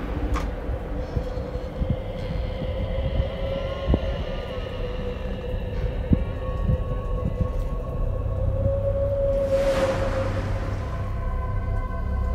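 Dark, ominous ambient music: a low rumbling drone with a steady held tone, and a hissing swell rising about ten seconds in.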